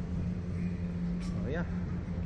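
Steady low mechanical hum from the slingshot ride's machinery while the riders wait in the seat before launch, with a short rising vocal sound from a rider about one and a half seconds in.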